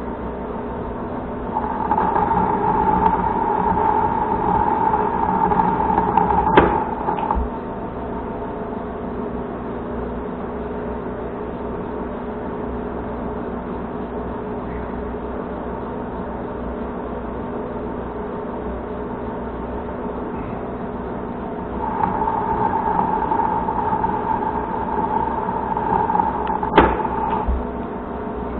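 Monarch manual lathe running steadily under power, spindle and gearing humming. Two single-point threading passes on a steel bar, one about two to seven seconds in and another from about 22 to 27 seconds, each louder with a steady higher tone from the cut and each ending in a sharp click.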